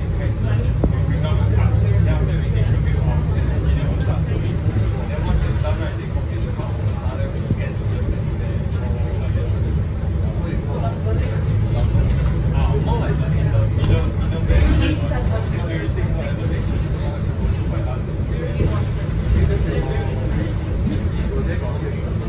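Cabin sound of a MAN NL323F (A22) single-deck diesel bus on the move: steady low engine and drivetrain noise with road noise.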